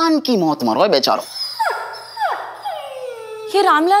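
Several men's voices wailing and moaning in pain. Quick wavering cries are followed, about halfway through, by a few long falling wails, and then wavering moans again near the end.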